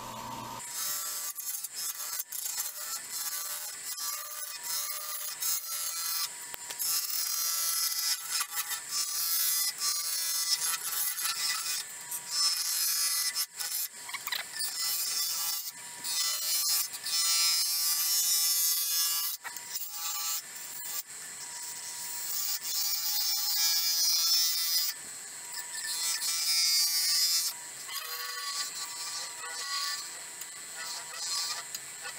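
Bowl gouge cutting into a spinning bowl of epoxy resin and stabilized dog biscuits on a wood lathe, a hard material to cut. A hissing, scraping cut comes and goes in repeated passes, loudest through the middle, over the lathe's steady hum.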